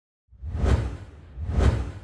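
Two whoosh sound effects with a deep rumble under them, peaking about a second apart, the second one trailing off.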